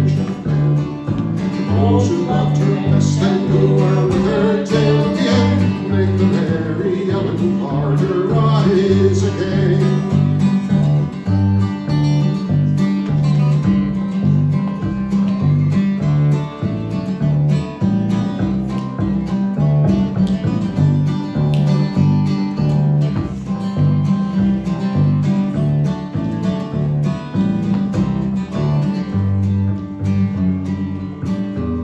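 Acoustic guitar and plucked upright bass playing an instrumental break, the bass keeping a steady line of low notes under the strummed guitar, with a busier melodic part over them in the first ten seconds or so.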